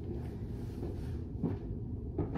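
Steady low rumble of room noise, with a faint soft knock or rustle about one and a half seconds in.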